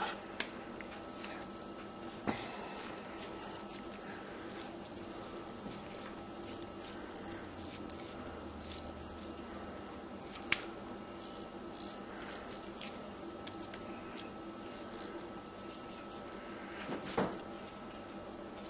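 Faint squishing of raw ground sausage meat being pressed and turned into patties by hand, over a steady low hum. A few soft clicks or taps, the sharpest about ten seconds in.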